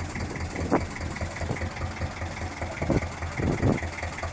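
Boat engine running at idle with a steady low throb, and a few short, sharper sounds over it about a second in and near the end.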